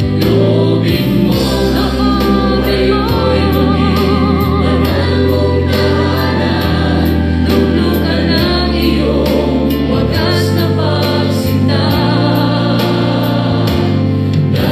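Christian worship music: a choir singing a hymn over instrumental backing with a steady beat, a held note with vibrato a few seconds in.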